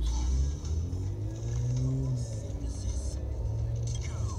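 Low, steady road and engine rumble heard from inside a car in slow freeway traffic, with music playing in the background.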